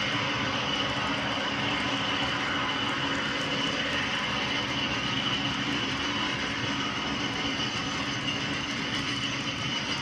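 HO scale model freight cars rolling steadily along the track, a continuous rolling rumble from the wheels on the rails with a faint steady whine.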